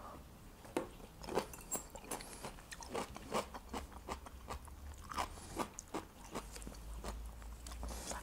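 A man chewing a crunchy cucumber slice after a shot of vodka: soft, irregular crunches and mouth sounds.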